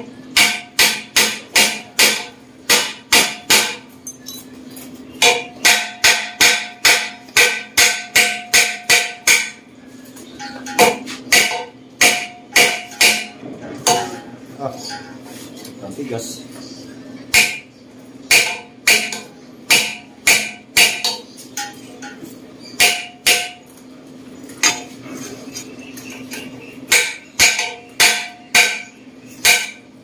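Steel struck repeatedly with a hammer, with a metallic ring after each blow. The blows come about three a second in runs, with short pauses between the runs.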